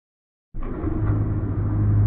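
Low rumbling drone with a steady deep hum, starting suddenly about half a second in and slowly getting louder: a cinematic intro sound effect.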